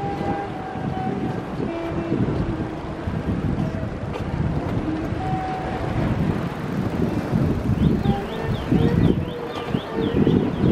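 Outdoor street ambience: a steady low rumble with wind on the microphone, and a run of quick high chirps near the end.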